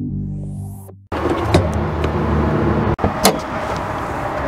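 Synthesizer intro music fading out with a rising whoosh. About a second in, a cut brings a steady mechanical running noise, the Honda Odyssey's 3.5-liter V6 idling, with a faint steady tone and a couple of brief clicks.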